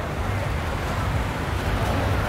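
Wind on the microphone, a steady low rumble, over the even wash of ocean surf.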